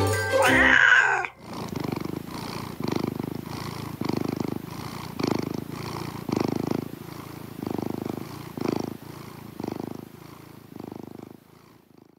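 A closing music jingle ends about a second in, then a domestic cat purrs in slow rhythmic swells, about one a second, fading out near the end.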